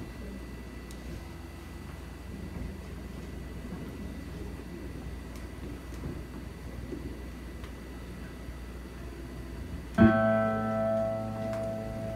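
Low room noise with a steady hum for about ten seconds, then a single loud chord on an amplified instrument rings out suddenly and sustains, slowly fading.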